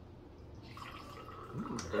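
Hard seltzer poured from an aluminium can into a small glass: a faint trickle of liquid that starts about a second in.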